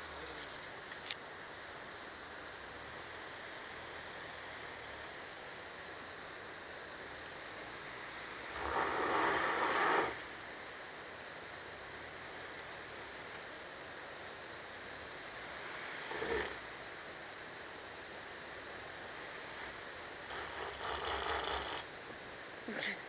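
A 4x4 crawling slowly down a rocky track, its engine faint under a steady hiss of wind on the microphone. A louder rushing noise rises about eight and a half seconds in and lasts over a second, with a shorter one near sixteen seconds.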